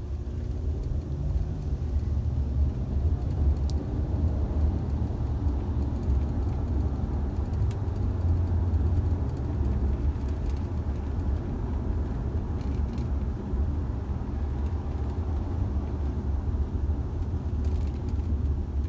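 Steady low road rumble of a moving car, heard from inside the cabin, with a few faint clicks.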